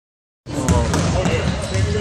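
Basketballs bouncing on a gym floor, a few sharp thuds starting about half a second in, with voices in the background.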